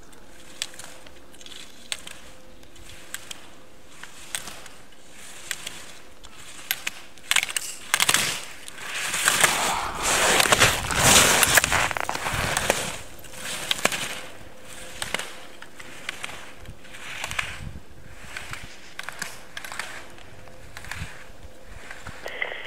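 Slalom skis carving and scraping over packed snow, one hissing swell per turn at about a turn a second, loudest in the middle as the skier passes close by. Sharp clacks of slalom gates being struck are scattered through.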